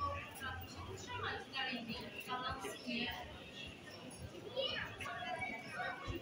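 Indistinct voices of passers-by talking, children's voices among them.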